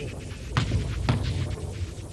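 A handball thudding twice, about half a second apart, over a steady low hum.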